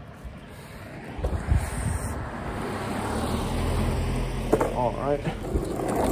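A car going by and a longboard's wheels rolling on asphalt, the rumble growing steadily louder as the board picks up speed.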